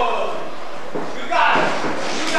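A shouted voice in a large echoing hall, with a dull knock on the wrestling ring about a second in.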